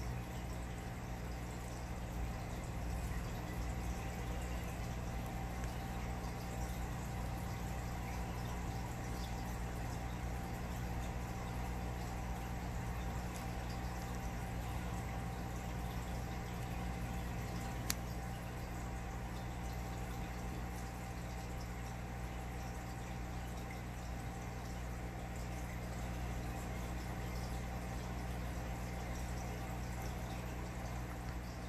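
Aquarium water bubbling and trickling steadily over a low, steady hum from the tank's running equipment. One sharp click comes about eighteen seconds in.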